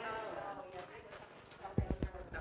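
Quiet voices in a room, then two dull low thumps in quick succession near the end.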